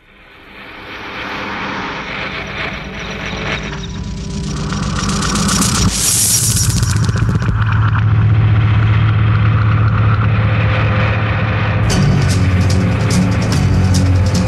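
Rock song intro fading in from silence and building through a high hissing swell to a held low bass note, with drum and cymbal hits coming in near the end.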